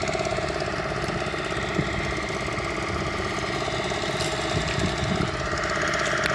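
An engine running steadily at an even speed, with a fast regular pulse in its drone.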